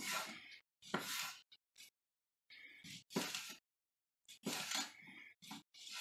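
Kitchen knife slicing through smoked sausage onto a wooden cutting board: a series of separate cuts, each a short knock with a scraping hiss, about one a second.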